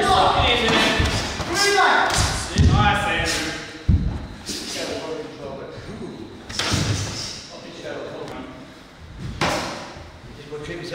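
Heavy thuds of gloved punches and kicks landing in full-contact sparring, with hard thumps about two and a half and four seconds in, amid voices calling out in a large echoing hall.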